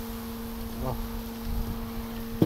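Steady hum of a honeybee colony on the exposed top bars of an opened hive, with low wind rumble on the microphone and a light tap just under a second in.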